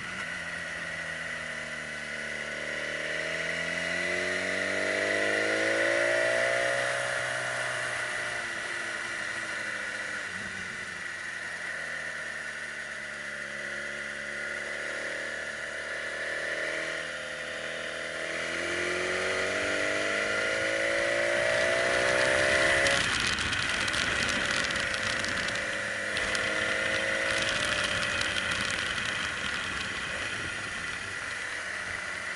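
Motorcycle engine heard from the riding position, its revs climbing and falling twice as it pulls out of hairpin bends, over a steady high whine. About three-quarters of the way through, the revs drop suddenly and a rough rushing noise joins in.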